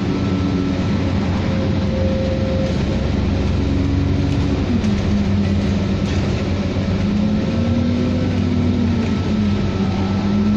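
An Alexander Dennis Enviro 400 double-decker bus drives along, heard from inside the passenger saloon: a steady engine and drivetrain rumble with a whine on top. The whine steps down in pitch about halfway through, climbs slowly, and steps down again near the end, as the automatic gearbox changes gear.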